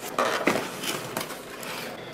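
Cardboard pizza boxes being handled, the lids moved and opened, with rustling and a few soft knocks in the first second.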